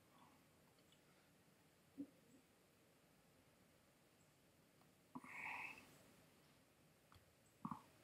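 Near silence: room tone, with faint mouth sounds from puffing on a cigar: a tiny click about two seconds in, a brief soft sound a little after five seconds, and a lip click near the end.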